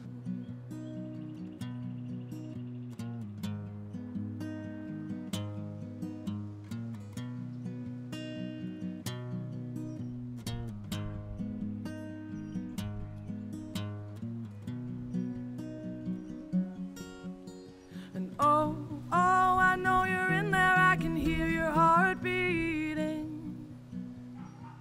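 Acoustic guitar playing a steady run of notes, joined about 18 seconds in by a woman singing, louder than the guitar.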